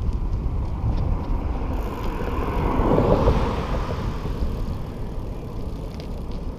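Wind rumbling on the microphone of a moving road bike, with tyre noise on rough asphalt. A car passes about halfway through, rising and then fading away.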